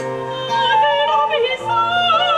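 A soprano singing in operatic style with wide vibrato, moving between held notes, over a steady low bowed bass note and a plucked long-necked lute.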